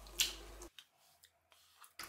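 A faint, brief wet squish as a handful of freshly grated raw potato is dropped into a plastic bowl of water, fading within half a second.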